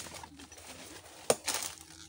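A dove cooing faintly, and a single sharp knock about a second in, followed by a brief rustle.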